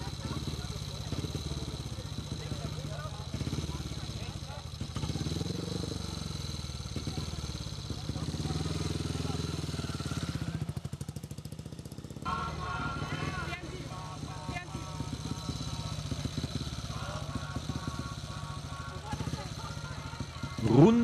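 Speedway motorcycle's single-cylinder engine running at low revs while ridden slowly with a child passenger, its pitch rising and falling in the middle.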